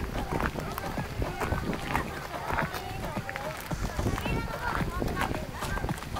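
Footsteps of people walking, many short steps in quick succession, under the voices of people chatting.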